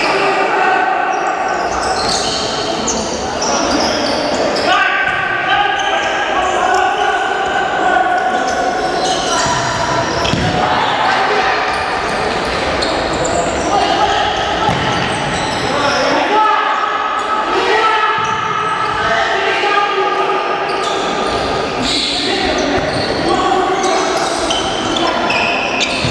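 Live futsal in an echoing sports hall: players' shouts and calls over one another, with the ball thudding as it is kicked and bounces on the wooden court.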